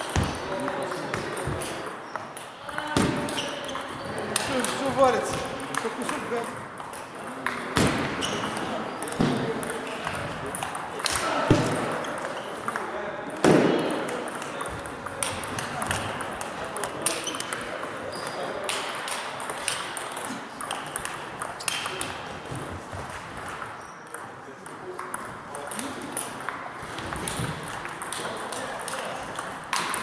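Table tennis rallies: the ball clicking off bats and table in quick, irregular strikes, with a few louder hits, from several games going on at once.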